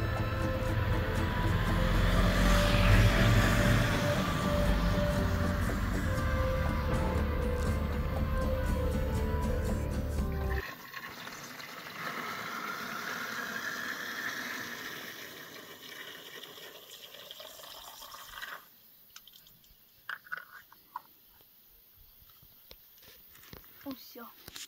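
Background music with steady tones for about the first ten seconds, cut off abruptly. Then water running from a marble public drinking fountain, a soft steady splashing hiss that stops about eight seconds later, leaving only a few small clicks.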